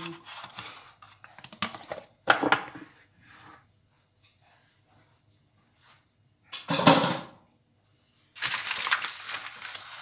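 Kitchen handling sounds: cookware and cutlery clattering on a countertop in a few separate knocks, then baking paper rustling near the end.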